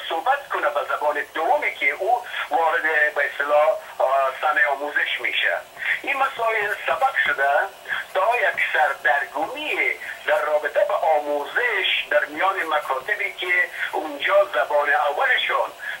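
A man talking continuously in an interview; the voice sounds thin, with no bass or top, like a telephone or call line.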